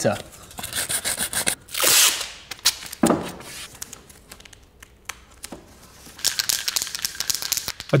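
Masking tape and masking paper being handled on car bodywork: a short tearing rasp about two seconds in, then rapid crinkling and rubbing of paper near the end.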